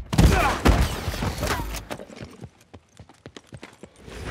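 A heavy thud of a body landing on the ground after a jump from a rooftop, followed by a loud, busy stretch of film sound effects. In the second half comes a quick, irregular run of sharp taps.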